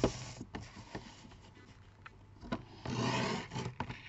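Sliding paper trimmer being worked on card. A click comes at the start, then about three seconds in there is a half-second scraping slide as the cutting head runs along its rail through the card, with small clicks of handling around it.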